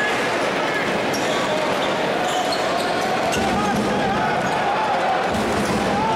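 Basketball arena crowd noise, a steady wash of many voices, with a basketball bouncing on the hardwood court during play.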